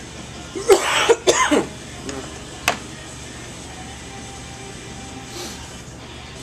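A man coughs twice in quick succession about a second in, over faint background music; a single sharp click follows about a second later.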